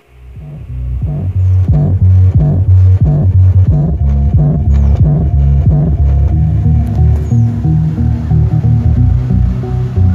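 ADS AB1000 active car subwoofer playing music, only its deep bass notes heard. It fades in over the first second, then plays loud, a sign that the repaired amplifier works again.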